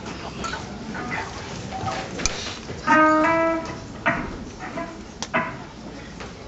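Amplified electric guitar played in short, isolated notes before the song starts. About three seconds in comes the loudest event, a held note that steps up once in pitch, followed by a few sharp single plucks.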